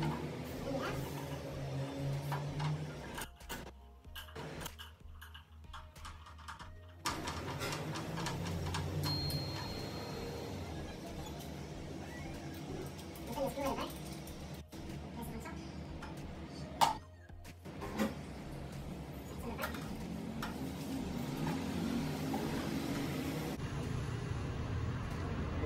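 Plastic stand-fan parts being handled and fitted together, with scattered knocks and one sharp click about seventeen seconds in.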